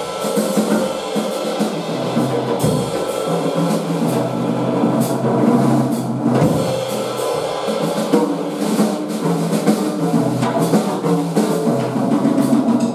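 Live small-group jazz with the drum kit to the fore, the drummer playing busy snare, cymbal and bass-drum figures while the horn rests, over steady pitched accompaniment.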